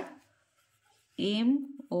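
Pencil writing letters on a paper book page, faint, in the pause before the next spoken letter.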